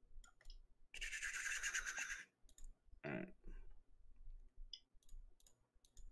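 Faint, scattered clicks of a computer mouse and keyboard, with a scratchy rustle lasting about a second that starts about a second in.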